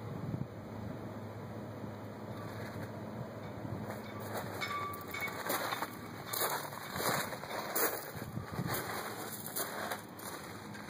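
Outdoor wind noise rumbling on a hand-held camera's microphone, with a run of irregular rustles and knocks in the second half.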